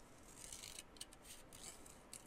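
Small scissors snipping through paper, cutting around a printed flower: several short, faint snips in quick succession.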